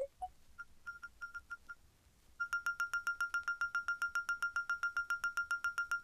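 FM7 software synth playing a vibraphone-like 'Vibe' patch in a bell-like tone. A few scattered short notes come first. From about two and a half seconds in comes a fast, even run of repeated notes on one pitch, about seven a second.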